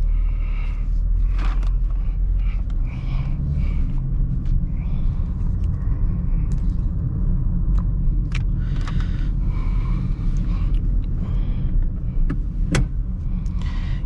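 Steady low rumble of engine and road noise inside the cabin of a 2018 Toyota Corolla 1.6-litre as it drives off and cruises along.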